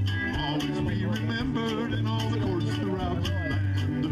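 Live country band playing an instrumental passage, with the fiddle bowing a sliding lead over bass, acoustic guitar and a steady drum beat with cymbals.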